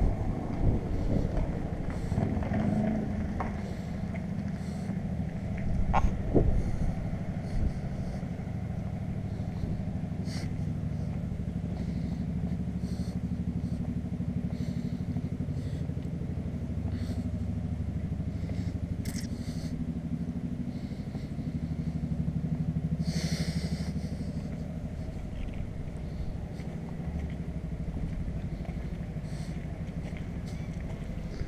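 A motor vehicle engine running steadily as a low hum, with a brief louder swell of hissing noise about 23 seconds in.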